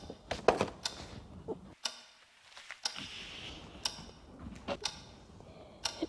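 Children stifling laughter in a hushed room: scattered short clicks and muffled snorts, irregular and about once a second, with a brief breathy hiss about three seconds in.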